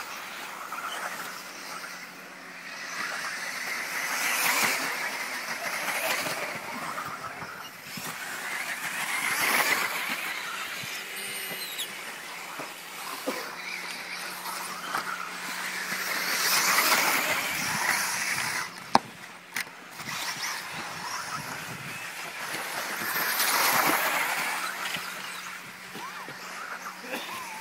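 1:10 scale electric 4WD off-road RC buggies racing on a dirt track: a high-pitched motor whine that swells and fades every few seconds as the cars pass. A couple of sharp knocks sound about three quarters of the way through.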